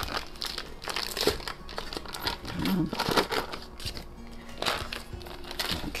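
Foil-paper wrapper of a block of cream cheese crinkling in irregular rustles as it is peeled open and the cheese is pushed out into a stand mixer bowl.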